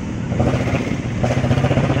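Engine of a small goods carrier running steadily as it drives along a street, getting a little louder in the second half.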